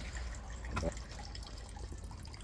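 Thin stream of homemade spirit running from the copper outlet pipe of a still's cooling barrel and splashing steadily into a half-full plastic basin.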